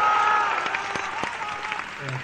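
Concert audience applauding after a thank-you from the stage, with high-pitched shouts from fans held over the clapping at first; the applause thins out toward the end.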